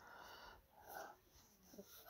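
Near silence, with two faint breaths from the speaker between phrases, the first at the start and the second about a second in.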